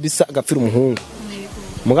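A man talking, breaking off about halfway, with a faint steady buzz under the pause before he speaks again near the end.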